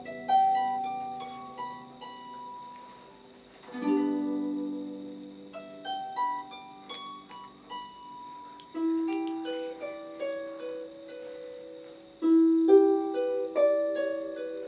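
Concert harp played solo: plucked notes ringing and fading, with fuller chords struck about four, nine and twelve seconds in.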